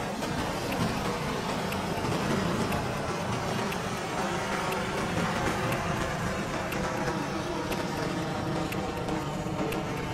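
Roar of a Falcon 9 first stage's nine Merlin engines during liftoff, as picked up by the launch-site microphones. It cuts in suddenly and holds as a steady, dense rumble.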